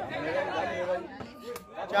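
Voices of a watching crowd chattering, loudest in the first second and then quieter.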